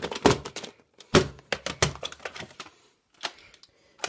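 Hard plastic VHS cassettes clattering as they are handled and knock together: a quick run of sharp clacks, another run about a second in, then one more click near the end.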